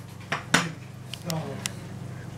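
A few light clinks and taps of metal on a disposable aluminium foil roasting pan holding a roast turkey, the sharpest about half a second in, over a low steady hum.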